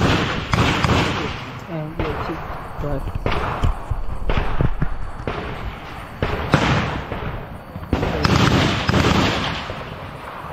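Gunfire in a firefight: repeated loud shots, some in quick pairs and others a second or more apart, each with a long echoing tail, with voices calling out between them.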